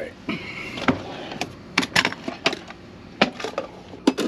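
A run of short, sharp clicks and knocks from things being handled and set down, with a man clearing his throat about a second in.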